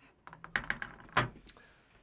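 Handling noises at a desk: a series of light clicks and knocks as a small handheld whiteboard is laid down on the desktop and cards are picked up, the sharpest knock a little over a second in.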